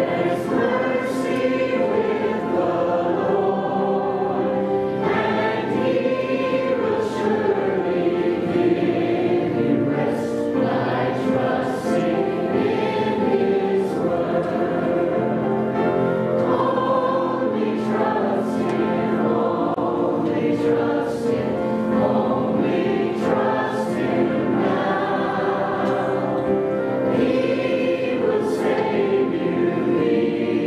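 Church worship team, women and a man, singing a gospel hymn together into handheld microphones, their voices carried through the sanctuary's sound system.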